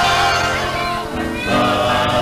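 Live samba group singing together in harmony with instrumental backing, holding long notes. The sound drops briefly about a second in, then a new held chord starts.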